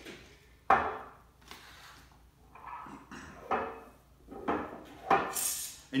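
Glass jar of homemade almond milk handled on a kitchen countertop: a sharp knock about a second in, then several lighter knocks and clinks, with a short rushing sound near the end.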